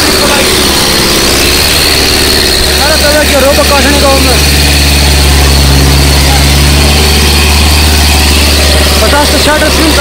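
Sonalika 750 tractor's diesel engine running hard under load as it drags an 18-disc harrow through sand. A loud, steady low engine note that grows heavier through the middle. Voices shout over it a few seconds in and again near the end.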